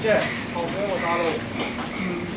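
A person talking briefly over a steady low hum and background noise.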